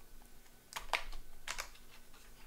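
Trading card packaging handled by hand: a few short, sharp crinkles and clicks of wrapper and card stock, in two quick clusters about a second apart.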